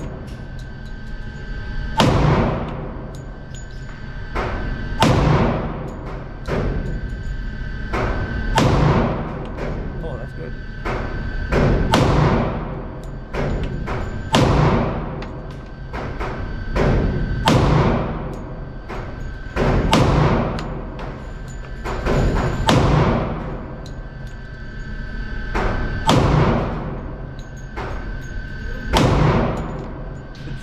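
Shots from a Rock Island Armory full-size high-capacity 10mm pistol fired at a steady pace, about one every second to a second and a half, each crack ringing on in the echo of an indoor range.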